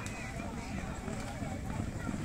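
Hooves of several racehorses galloping on a sand track, a rapid, dense low drumming, with people's voices over it.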